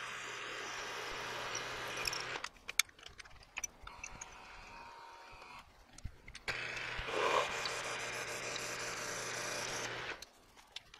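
Milling machine spindle running a drill bit through a metal block. It stops about two and a half seconds in, followed by clicks and knocks as the bit is changed in the drill chuck. It starts again about six and a half seconds in and drills on, louder for a moment as the bit bites.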